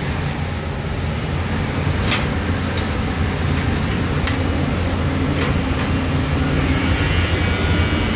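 Grain dryer fan running: a loud, steady drone with a deep hum underneath and a few faint clicks.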